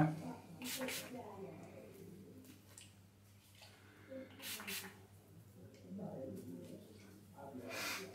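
Two short hisses from a spray bottle of C22 lace-release solvent, about a second in and again about four and a half seconds in, each about half a second long. The solvent is sprayed onto the hair system's tape to loosen it from the scalp.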